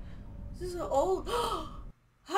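A person's high, breathy voice gasping over a low steady rumble, starting about half a second in; both cut off suddenly just before the end.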